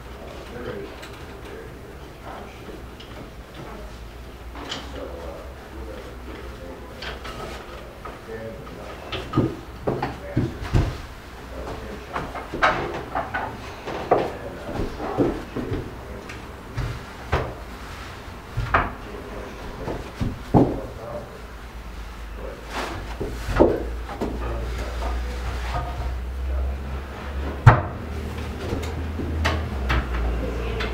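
Reproduction folding field bed's wooden frame being taken down and folded up: a run of wooden knocks and clunks from the rails and joints, starting after a quieter stretch, with the sharpest knock near the end.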